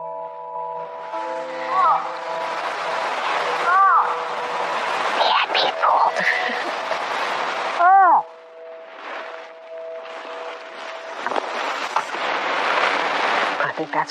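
A hunter's voiced moose calls, three short calls that each rise and fall in pitch, with a stick raking and rubbing against brush and a tree trunk between them to imitate a bull moose thrashing its antlers. Soft background music holds steady tones underneath.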